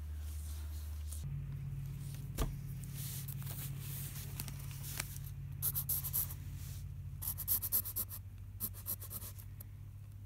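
Wooden pencil writing on lined notebook paper: clusters of short scratchy strokes through the second half, after a couple of sharp clicks. A steady low hum runs underneath.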